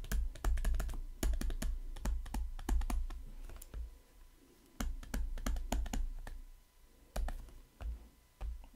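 Stylus tapping and scratching on a tablet screen during handwriting: a run of irregular clicks and soft knocks, with short pauses about four seconds in and near the end.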